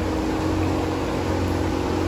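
Steady mechanical hum with an even rushing noise, holding a low drone throughout without change.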